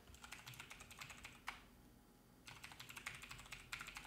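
Faint typing on a computer keyboard: a quick run of key clicks, a short pause about halfway, then another run of clicks.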